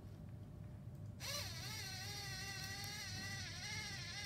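A Lego Mindstorms NXT brick's speaker sounding one long electronic note, part of the melody that the cassette recorder plays back from its colour-coded paper tape. The note starts about a second in and its pitch wavers slightly.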